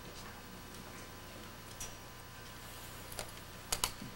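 Quiet gymnasium between band pieces: a steady low room hum with a few small sharp clicks and taps. The loudest are two quick clicks near the end.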